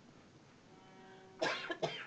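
Two quick coughs from an audience member about a second and a half in, over faint held orchestral tones.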